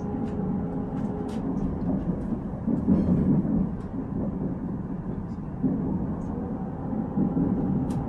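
Cabin ride noise of a Korail Nuriro electric multiple-unit train running on the rails: a steady low rumble with a constant hum. The rumble swells louder about three seconds in and again near the end, with a few faint ticks and rattles.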